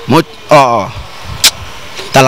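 A man's voice making two short vocal sounds, the second sliding down in pitch, then a single sharp click about one and a half seconds in.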